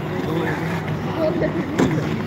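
People talking around an ice rink over a steady scrape of skate blades on the ice, with one sharp knock near the end.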